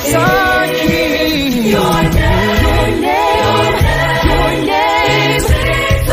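A choir singing a Christian devotional song, several voices in harmony over sustained low bass notes.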